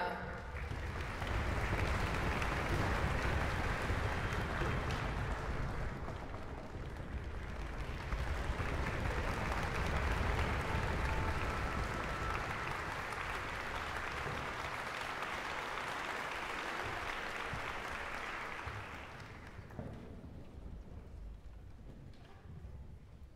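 Concert hall audience applauding, swelling twice and then dying away near the end.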